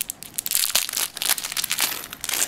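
Small clear plastic bag crinkling in a run of irregular crackles as fingers work it open.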